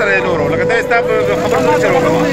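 Men's voices talking over a steady engine hum.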